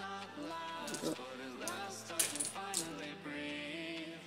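Background music running throughout, with a few sharp light clicks and clinks of small puzzle-cube pieces being worked with a small metal tool as the center caps are pried out.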